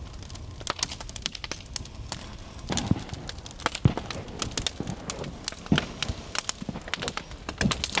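Bonfire of wooden pallets crackling, with irregular sharp pops and a few louder cracks that carry a low thud.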